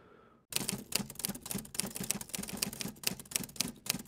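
Typewriter keys clattering in a fast, irregular run of sharp clicks, starting about half a second in.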